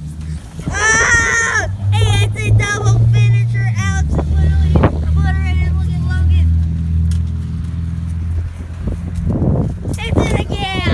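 Teenage boys shouting and yelling without clear words as they wrestle on a backyard trampoline, with a couple of sharp thumps around the middle. A low steady hum runs underneath and drops in pitch about four seconds in.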